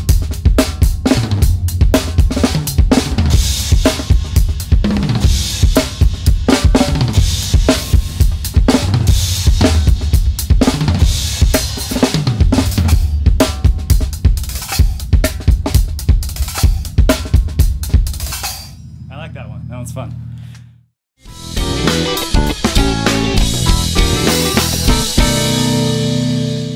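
Sonor SQ2 drum kit with Hammerax cymbals played in a fast, busy pattern of snare, bass drum, toms and cymbals. The drumming stops about 18 seconds in and leaves a low ringing that cuts off about 21 seconds in. Recorded music then starts.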